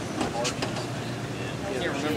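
A woman laughing, with a steady low hum beneath and a few light clicks about half a second in.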